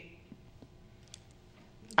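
A pause in speech: faint room tone with a few small, quiet clicks. A woman's speech resumes right at the end.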